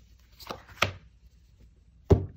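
Two short, sharp taps about a third of a second apart, the second louder, as an oracle card is set down on a cloth-covered table.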